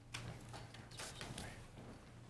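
A few faint footsteps and light knocks, irregularly spaced, over a steady low electrical hum.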